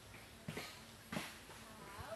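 Flies buzzing faintly and steadily, with two footsteps on dry coconut husks and leaf litter, about half a second and a second in.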